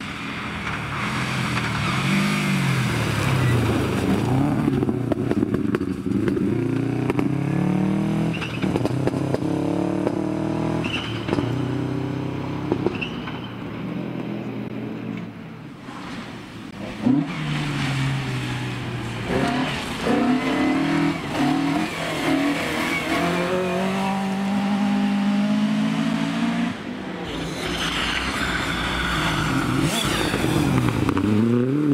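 Rally cars at full speed on a gravel forest stage, one after another, their engines revving up and dropping with each gear change and lift off the throttle. The sound eases for a moment about halfway through before the next car comes through, with one sharp bang just after.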